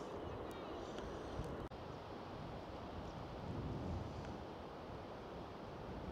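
Faint, steady outdoor background of light wind on the microphone.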